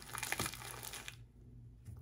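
Soft crinkling and crunching of a freeze-dried ice cream's bag-within-a-bag wrapping as pieces are broken out of it, with a small click, dying away about halfway through.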